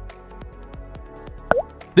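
Background music with light, evenly spaced short notes, and a brief plop-like sound with a dipping-and-rising pitch about one and a half seconds in.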